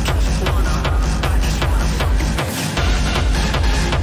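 Hard techno track playing, with a steady kick drum beat over heavy bass and bright percussion. The bass drops out briefly about two and a half seconds in.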